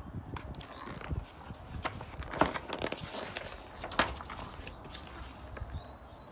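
Pages of a picture book being turned and handled: soft rustling with scattered clicks, the two sharpest about two and a half and four seconds in.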